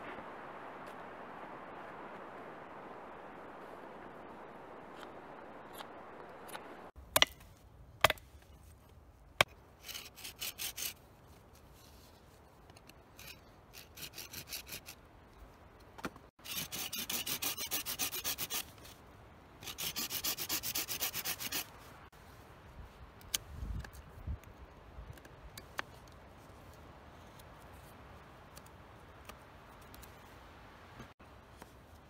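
A knife carving notches into a green wooden stick, in runs of quick scraping strokes that each last one to two seconds. A few sharp knocks come before them, and a steady hiss fills the first seven seconds or so.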